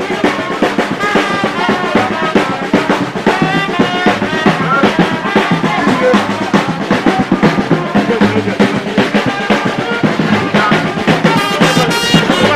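Music with a drum kit and brass instruments playing a steady beat.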